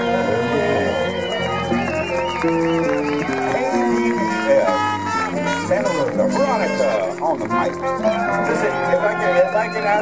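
Live Latin band playing: trumpet, timbales and congas, electric guitar and a stepping bass line under a woman's singing, with maracas shaking.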